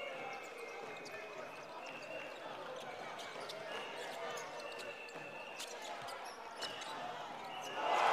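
Live basketball court sound in an arena: a basketball dribbling on the hardwood floor, sneakers squeaking in short high chirps, and voices of players and spectators echoing in the hall.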